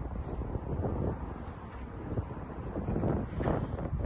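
Wind buffeting a handheld phone microphone outdoors: an uneven low rumble that swells and fades, with no engine running.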